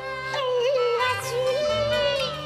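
Cantonese opera music: a sustained, wavering melody line held over a stepping bass accompaniment.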